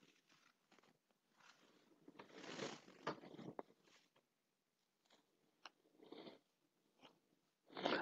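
Near silence, with a few faint clicks and a brief soft rustle about two and a half seconds in.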